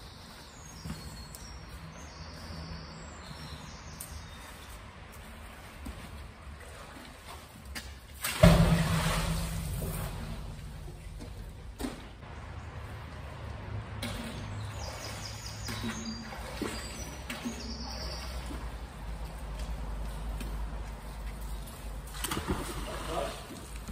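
A fishing magnet splashing into canal water about eight seconds in, the splash fading over a couple of seconds. Faint bird chirps can be heard in the background.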